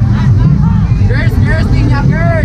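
Festival street crowd: short shouted calls over a loud, continuous low rumble.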